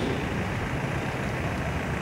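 Steady low background rumble from an open-air venue, picked up by the lectern microphone, with no distinct event in it.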